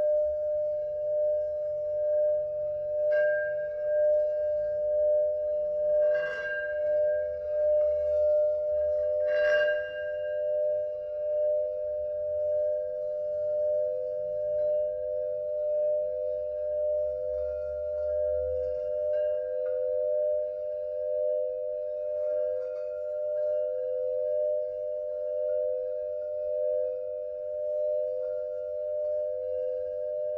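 A Mani singing bowl sung by rubbing a wooden mallet around its rim: a steady high ringing tone that wavers in a slow pulse. There are three brief scratchy touches of the mallet on the rim in the first ten seconds.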